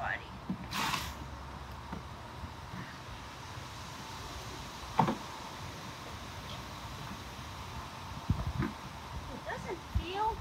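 Cardboard cereal boxes being handled and stood on end on a wooden bench: a short rustle about a second in and one sharp knock about halfway through as a box is set down, with a few low thumps near the end.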